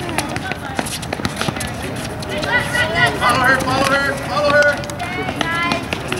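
Several children's high-pitched voices shouting and calling out across the court during play, most of the calling in the middle of the stretch. Sharp knocks of the ball being kicked and of shoes on the hard court are heard throughout.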